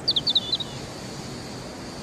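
A bird chirping: a quick run of five or six short, high chirps in the first half-second, over a steady outdoor background hiss.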